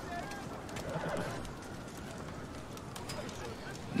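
Quiet outdoor background ambience: a low steady hiss with a few soft clicks and several short, faint chirp-like whistles, and a weak murmur about a second in.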